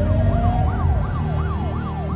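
Emergency-vehicle siren winding up in one slow rise, then switching to a fast yelp that sweeps up and down about three times a second, over a low steady drone.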